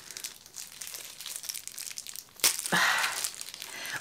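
Clear plastic wrapping crinkling and tearing as fingers pick open a packet of fresh blueberry eye pads. It is faint at first, with a sharp crackle about two and a half seconds in, followed by about a second of louder rustling.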